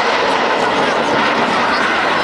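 Jet engines of a Blue Impulse formation of Kawasaki T-4 jets flying past, loud and steady, with spectators' voices underneath.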